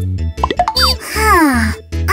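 Bouncy children's background music with a repeating bass line, overlaid about half a second in by quick rising cartoon 'plop' sound effects, then a short falling, pitched-up cartoon-voice exclamation.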